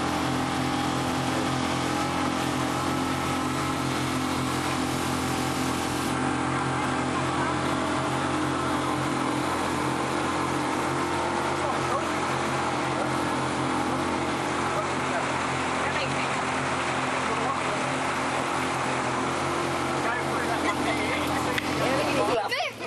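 Boat motor running at a steady cruising speed while the boat moves through the water, a constant even drone.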